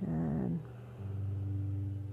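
A dog's short, wavering vocal sound, lasting about half a second, over soft ambient background music with sustained low notes that swell about a second in.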